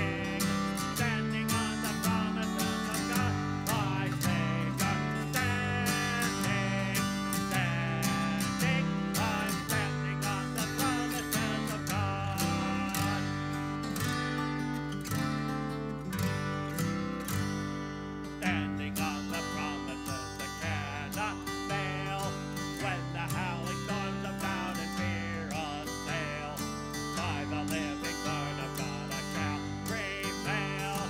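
A hymn sung to strummed acoustic guitar accompaniment, a little quieter in the second half.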